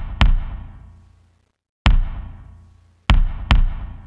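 Soloed electronic kick drum played through an Eventide SP2016 Stereo Room Vintage reverb and Omnipressor: four hits, the last two close together, each with a dark, short reverb tail that dies away in about a second and a half, with little crackles in the tail from the vintage reverb.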